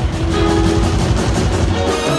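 Big band playing jazz live: a saxophone and brass section holding notes over upright bass and drum kit.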